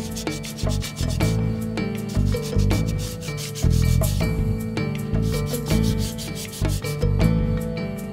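Hand sanding the inside of a hollowed tapara shell, a repeated rubbing over background music with plucked notes and bass.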